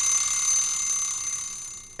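Steve's Talking Clock alarm sound playing on a Windows computer: several steady high tones ringing together, fading away near the end.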